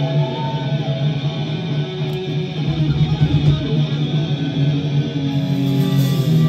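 A live heavy metal band's electric guitars and bass holding long, ringing notes as a song opens, loud in a small club.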